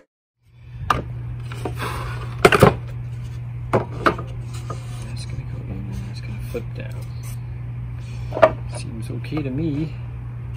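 Pine floor boards handled on a wooden workbench: several sharp wooden knocks, the loudest two in quick succession about two and a half seconds in, over a steady low hum. A man mutters near the end.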